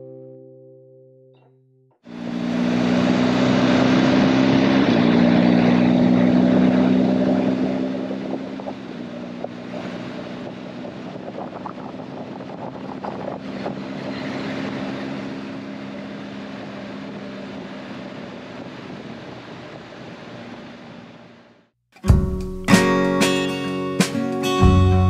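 Live onboard sound of a BMW R1250GS boxer-twin motorcycle on the move: a steady engine note under wind rush, louder for the first few seconds, then quieter. It is cut in after music fades out at the start, and it cuts off shortly before guitar music begins near the end.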